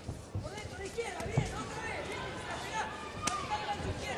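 Boxing-arena sound during a live bout: ringside voices shouting over dull thuds from the ring, with a sharp click about three seconds in, in the last seconds of a round.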